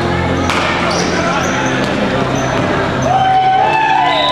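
Rubber dodgeballs bouncing and striking on a hardwood gym floor, with one sharp impact about half a second in, amid players and spectators shouting. A long shout rises and holds near the end.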